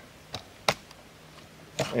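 A couple of short clicks as the collapsible stock of an HK MP5A3 submachine gun is handled, the sharpest about two-thirds of a second in.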